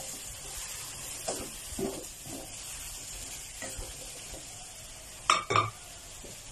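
Sponge gourd, baby corn and minced chicken stir-frying in a pan: a steady light sizzle, with the spatula scraping through the food now and then. Near the end the spatula knocks sharply against the pan twice in quick succession.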